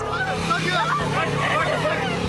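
A woman screaming and crying out in terror as she is carried off on a motorcycle, other voices shouting around her, with the motorcycle's engine running steadily beneath.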